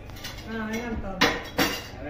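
Two sharp clinks of tableware ringing out, the first a little over a second in and the second under half a second later, against a background of voices.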